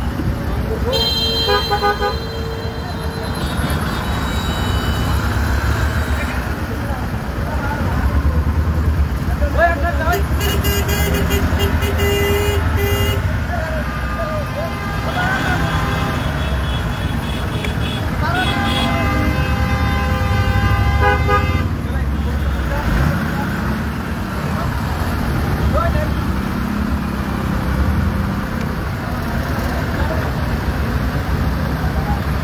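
Heavy road traffic in a jam: a steady rumble of idling and creeping truck and car engines with vehicle horns sounding several times, short toots near the start and around ten seconds in, and one long horn held about three seconds past the middle.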